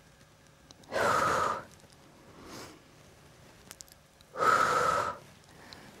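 A woman breathing out hard twice, about three and a half seconds apart, with effort while holding her legs raised off the floor in an abdominal exercise.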